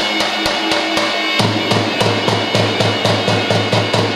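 Albanian folk dance music: a large double-headed bass drum beaten in a driving rhythm under a wind instrument's held notes. The deep drum beats come quick and steady from about a second and a half in, roughly five a second.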